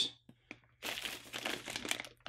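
Plastic packaging crinkling as it is handled, starting about a second in after a faint tick.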